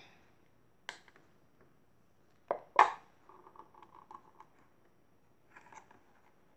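Handheld can opener working on a tin can lid: a few sharp metal clicks, two loud ones about two and a half seconds in, then about a second of rattly metal-on-metal scraping and a short scrape near the end, as the opener is worked around the rim without opening the can cleanly.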